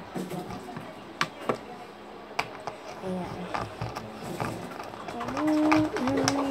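Plastic drink bottles being handled: a few sharp clicks and light knocks, the first two close together about a second in. Near the end comes a short hummed voice.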